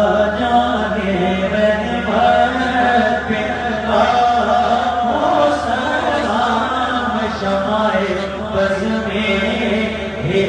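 A man's voice chanting an unaccompanied Islamic devotional recitation into a microphone, drawing out long, wavering held notes.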